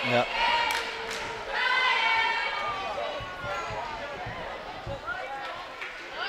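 Basketball bounced on a hardwood gym floor several times by a shooter at the free-throw line, over the voices and shouts of a crowd in the gym.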